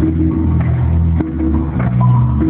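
A live band playing on stage, with a heavy low bass line and drum hits.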